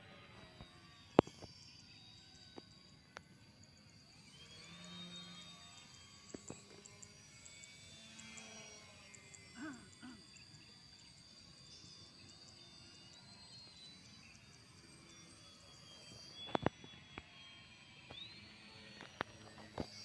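Faint high whine of an electric radio-control Pitts biplane's brushless motor and propeller overhead, drifting up and down in pitch as it manoeuvres, over a steady high tone. A sharp click about a second in and another near the end.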